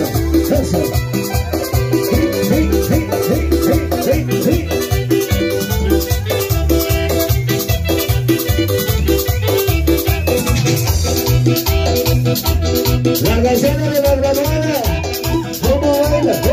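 Loud chicha dance music from a band: a steady beat over a bass line, with fast high percussion and a melody that glides more near the end.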